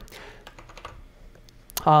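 Computer keyboard keystrokes: a handful of quick, light clicks in the first second.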